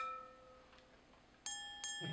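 Ringing of two wine glasses just clinked together, fading away within the first second. About a second and a half in, a bright bell-like chime sounds twice in quick succession.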